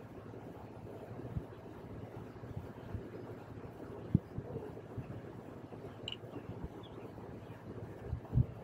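Quiet background with a steady low hum and a few soft knocks, the loudest about four seconds in.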